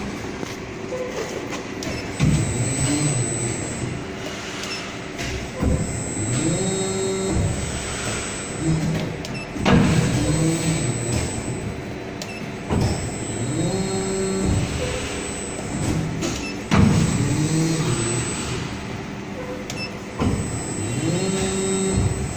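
Haitian MA2000 servo-motor injection molding machine cycling: its servo-driven hydraulic pump whines up and down in pitch with each movement, with a sharp clunk about every three to four seconds.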